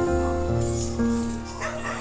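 Background music of slow, held chords. Near the end comes a brief rough, noisy sound.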